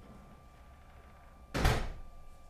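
A single loud thump about one and a half seconds in, over a faint steady tone and low room noise.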